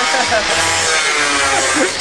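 A man laughing.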